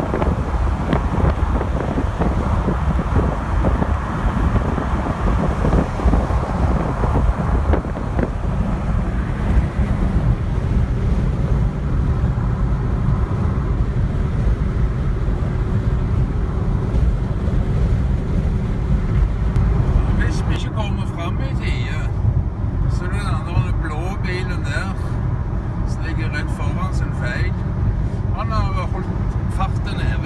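Steady road and engine noise of a car driving on a motorway, heard from inside the cabin, with wind rushing past for the first several seconds. From about two-thirds of the way in, indistinct voices sound over the road noise.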